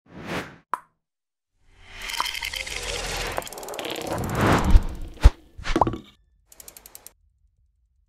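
Channel logo intro made of sound effects: a short whoosh and a click, then a noisy swell that builds for about three seconds into one sharp hit, followed by a short swoosh and a faint fluttering tail.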